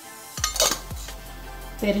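Stainless-steel spice tins and a small steel spoon clinking and tapping, a few sharp metal clicks, as spice powder is spooned out. Background music runs underneath.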